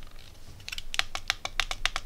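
Detented rotary encoder knob on a ZK-4KX buck-boost power supply module clicking as it is turned, a quick run of about a dozen small clicks starting a little past halfway.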